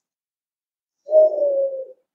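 A single low hooting note, held for just under a second and falling slightly in pitch, starting about a second in.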